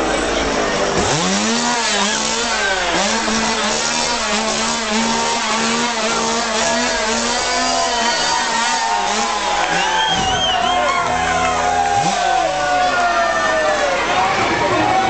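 A chainsaw engine comes up about a second in and is held at high revs with brief dips, then drops and revs up again near the end, over a noisy crowd.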